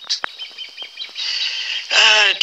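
Bird chirps in a cartoon jungle soundtrack, heard through a TV speaker, with a short sharp click just after the start.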